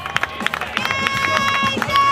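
A horn sounds a steady, unwavering note, first briefly about a second in, then again near the end in a longer blast. It plays over scattered clapping and crowd noise as the game ends.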